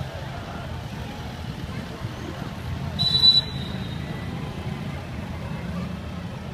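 A motorcade of cars and police motorcycles passes with a steady low engine and traffic rumble. About three seconds in comes one short, shrill whistle blast, the loudest sound.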